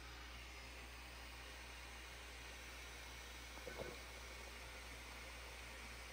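Faint steady hiss with a low hum underneath, and a brief faint sound a little before four seconds in.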